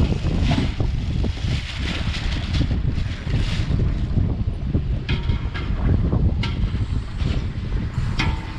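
Wind buffeting the microphone in a steady low rumble, over the crackle of plastic bags being shaken out as pineapple chunks are tipped into stainless steel pots.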